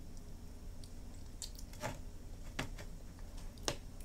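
A few short clicks and soft squelches from handling a plastic squeeze bottle of grape jelly, the sharpest a knock near the end as the bottle is stood on the tray.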